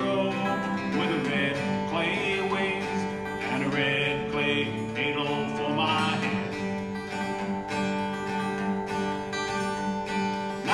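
Acoustic guitar played solo in a steady, country-style picked and strummed rhythm.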